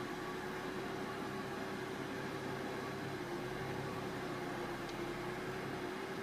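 Steady background hiss with a faint constant hum and no distinct events: room tone.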